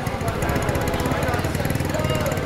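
Motor scooter engine running at low speed with a rapid, steady chugging, close by. Crowd chatter underneath.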